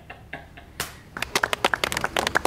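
A small group of people clapping their hands, starting about a second in: quick, irregular claps.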